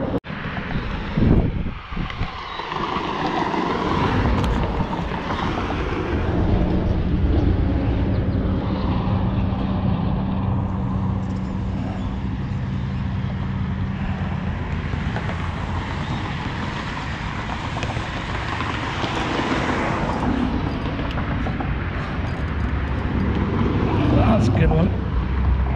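Steady rush of road traffic passing beside the bridge, mixed with wind on the microphone, with a low engine hum from a passing vehicle for several seconds in the middle. A few handling knocks in the first two seconds.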